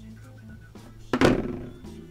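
Quiet music with steady low notes, and about a second in a single thunk as a smartphone is set down on the desk.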